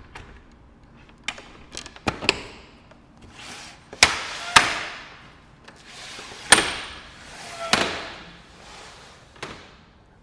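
Aluminum-framed panels of a vertical four-track porch window sliding in their tracks, each rushing slide ending in a sharp knock as the panel stops. About nine knocks in all, the loudest around four and six and a half seconds in.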